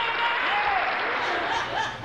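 Audience applauding, with voices over it; the applause thins out near the end.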